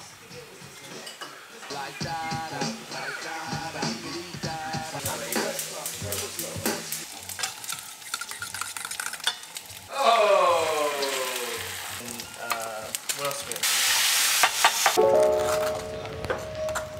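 Food frying in pans on a gas stove: sizzling, with many small clinks and scrapes of a spatula and utensils against the pans, and a louder hiss of sizzle for about a second near the end.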